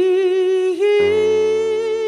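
A singer holds a long note with vibrato, dipping briefly and stepping up to a slightly higher note just before halfway. A stage piano chord comes in underneath about a second in.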